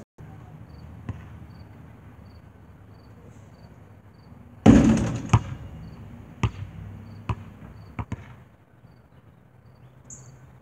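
A basketball hits with a loud bang about five seconds in, then bounces several more times on the asphalt driveway, each strike sharp and separate. Faint crickets chirp steadily behind.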